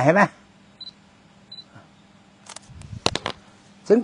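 A man speaks briefly at the start. In the quiet pause that follows, a short cluster of sharp clicks with a soft low rustle comes about two and a half to three seconds in.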